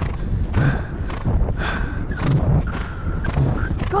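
A horse cantering on grass, its hoofbeats coming in a steady rhythm over a rush of wind on the rider-mounted camera.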